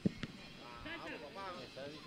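Faint talking in the background, far below the commentary level, preceded by a couple of short clicks just after the start.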